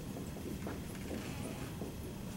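Dry-erase marker writing on a whiteboard: a quick, irregular run of short, light taps and strokes as letters are written.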